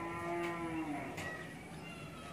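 A cow mooing faintly in the background: one drawn-out call lasting about a second, near the start.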